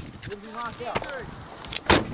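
Indistinct men's voices talking, then a short, sharp knock just before the end.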